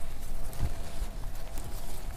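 Soft, low knocks and rustling of a plastic plant pot being handled and lifted out from among other potted plants.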